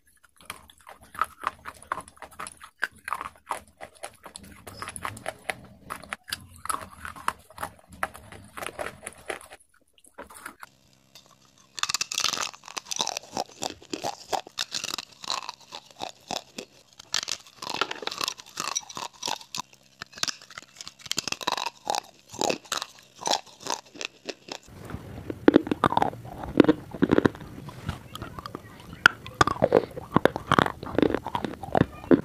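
Close-miked crunching and chewing of hard, brittle pieces in quick, sharp bites. About ten seconds in there is a short lull. Near the end the crunch turns deeper and fuller.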